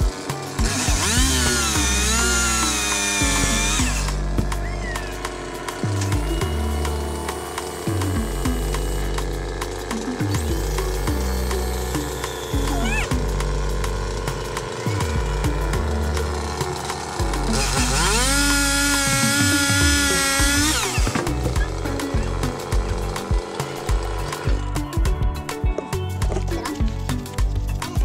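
Chainsaw cutting in two bursts of about three seconds each, one a second in and one about two-thirds through, its pitch wavering under load. Background music with a steady bass beat plays throughout.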